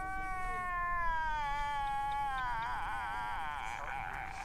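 A long, high-pitched crying wail from an edited-in reaction-meme sound effect, cat-like in tone; it sinks slowly in pitch and breaks into a fast wavering quaver in the second half.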